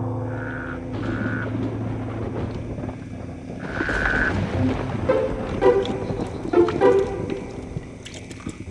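Horror film score: a sustained low drone with held higher tones, then a run of short pitched notes in the second half.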